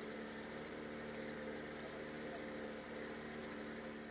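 A faint engine hum at a constant pitch, running steadily over a low, even hiss.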